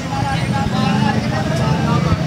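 Busy street ambience: a steady low rumble of traffic engines, with people talking over it.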